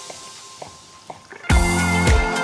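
A few faint taps of a chef's knife on a wooden cutting board as it chops raw chicken breast, then background music with a steady beat comes in loudly near the end.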